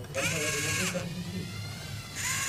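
LEGO Mindstorms NXT motor whirring through its gear train in one short run of under a second, a high whine that rises as it starts and falls as it stops.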